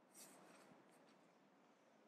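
Near silence, with faint crunching of a person chewing a crunchy fried vegan crab ball, softest after a brief rustle about a quarter second in.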